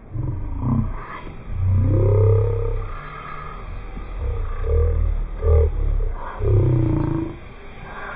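Several deep, pitched growls: the first slides down, a long one slides up, a few short ones follow, and a last one slides down near the end.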